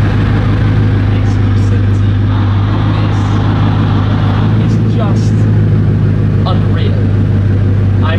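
Bugatti Chiron's quad-turbocharged 8.0-litre W16 engine idling with a steady low drone, heard from the driver's seat.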